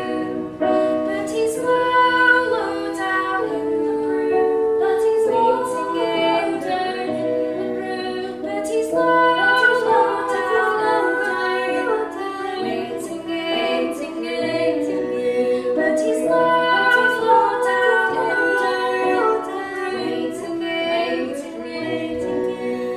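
Live traditional folk music: two fiddles playing a melody together over an electric keyboard accompaniment.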